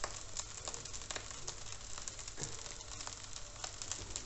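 Fried rice with chicken and egg sizzling in oil in a wok over a gas flame on medium-high heat: a steady, fairly quiet sizzle dotted with fine crackles.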